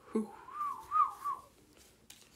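A person whistling a short wavering phrase: a few quick rising-and-falling notes over about a second, then it stops.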